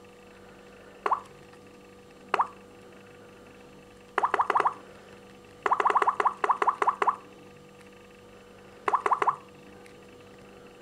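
Samsung Galaxy S4 touchscreen tap sounds: short water-drop "plop" blips, two single taps and then three quick runs of rapid taps. The rapid tapping is the kind that opens Android's Lollipop easter egg.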